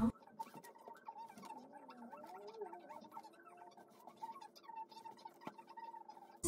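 Faint rustling and soft handling noise of a cotton t-shirt being shaken out and folded on a table, with scattered light ticks.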